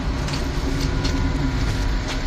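Steady low engine rumble of a nearby road vehicle, with a faint even hum.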